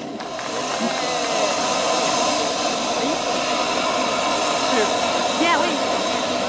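Steam locomotive blowing off steam from the top of its boiler: a loud, steady hiss that builds up in the first second and then holds.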